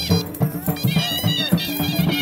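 Dhol drum beating a steady folk rhythm, with a high reed pipe playing a held, wailing melody over it.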